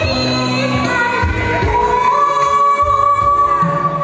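A woman singing a Chinese song into a microphone over accompaniment music. She holds one long note through the second half.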